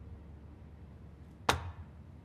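A paper folder slapped down onto a wooden desk: one sharp slap about a second and a half in, with a faint tick just before it and a short ring after.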